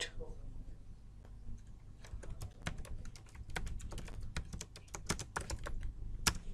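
Computer keyboard typing: a run of irregular keystroke clicks starting about two seconds in as text is entered into a form field.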